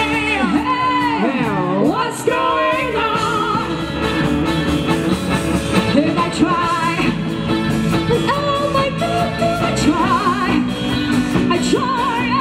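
Live pop song from a stage band: a singer's amplified voice, with gliding and wavering held notes, over drums, electric guitar and keyboards.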